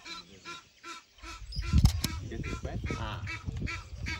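Ducks on the waterhole calling repeatedly. A low rumble sets in about a second in, with two sharp knocks a little under two seconds in as the loudest moment.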